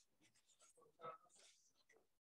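Faint rustling and crinkling of paper wrapping as a book is pulled out of it, in irregular short scrapes. A brief faint voice sound about a second in is the loudest moment.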